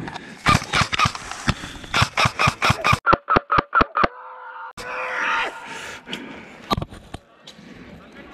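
XM177E1 electric airsoft gun firing a string of about fifteen single shots, each a sharp clack with a short gearbox whir, coming faster toward the end at about four a second. A rustle follows.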